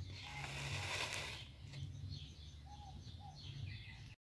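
A brief rustling scrape during the first second and a half as a plastic pot half is pressed down into wet cement in a mould lined with plastic sheeting. Faint bird chirps follow over a low steady hum.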